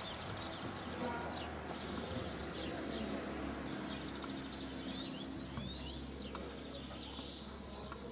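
Small birds chirping and twittering in quick, repeated short calls over a steady low background noise.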